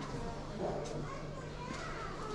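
Background chatter of voices in an indoor market hall, children's voices among them, over a steady low hum.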